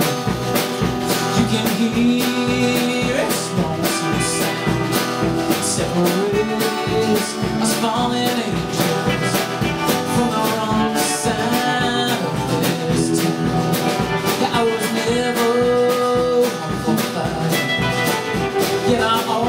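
A live band playing a bluesy country song: strummed acoustic guitar, electric guitar and bass over a steady drum beat.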